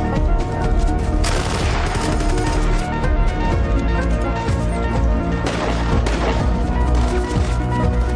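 Rapid, repeated gunshots over steady background music.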